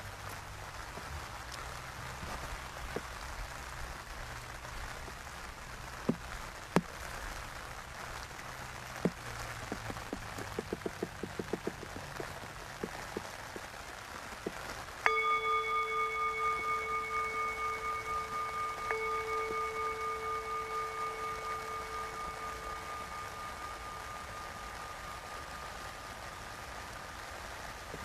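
Tibetan singing bowl struck twice, about four seconds apart, each strike ringing with a pulsing, slowly fading tone. Before the first strike there are a few sharp clicks and a quick run of ticks over a steady outdoor hiss.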